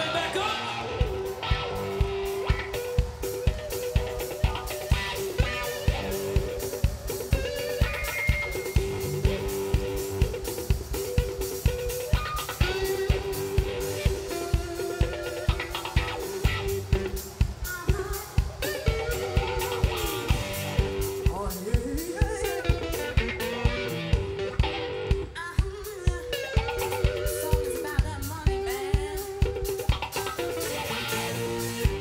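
Live band playing an instrumental passage: drum kit keeping a steady beat of about two hits a second, with electric guitar holding and bending notes and bass underneath.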